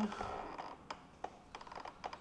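Light clicks and taps of multimeter test probes against wiring-connector pins during a continuity check, with two sharper clicks about a second in.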